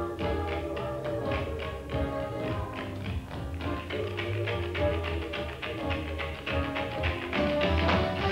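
Swing-style big band music with rapid, rhythmic tap-dance steps from a chorus line of dancers.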